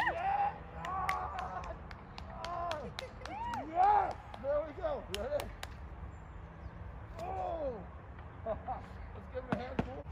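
A group of children clapping unevenly, sharp hand claps coming thick in the first half and thinning out later, mixed with short rising-and-falling shouts and calls from children's voices.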